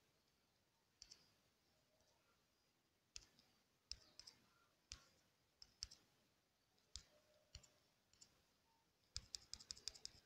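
Faint, sharp clicks of fingertip taps on a phone touchscreen: single taps spaced a second or so apart, then a quick run of taps near the end.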